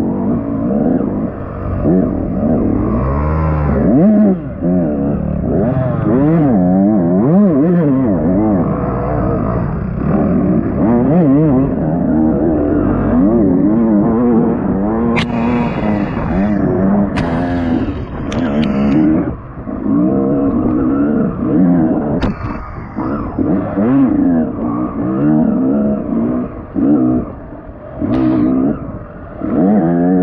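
Dirt bike engine, heard from the rider's helmet, revving up and down again and again as the throttle is opened and closed. In the second half it drops briefly toward idle several times, and a few sharp clicks stand out over it.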